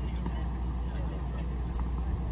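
Outdoor tennis-court ambience: a steady low rumble with faint voices and a few faint taps, and no loud ball strike.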